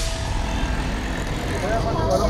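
Dense road traffic: a steady rumble of many vehicles. Near the end, children's voices start to come in over it.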